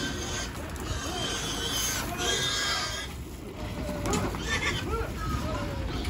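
Pigs squealing: one long high squeal about two seconds in and shorter squeals later, from pigs being handled off a livestock truck.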